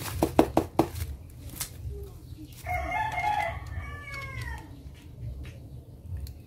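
A few sharp knocks on a boxed album in the first second. Then a rooster crows once, starting about two and a half seconds in and lasting about two seconds, its call falling in pitch at the end.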